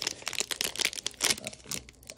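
A foil wrapper on a 2019-20 Hoops basketball card pack being torn open by hand, a rapid run of crinkles and crackles.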